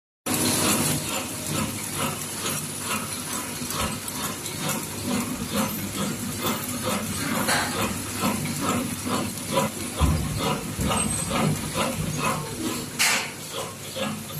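High-speed disposable cutlery packaging machine running, wrapping plastic forks one by one in film: an even rhythmic ticking at about three strokes a second over a steady hiss, with a short louder hiss near the end.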